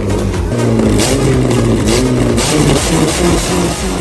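Car engine running and revving under background pop music.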